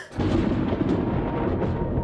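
A sudden, loud rumble like thunder that starts just after the beginning and carries on steadily. Faint held musical tones come in about a second in.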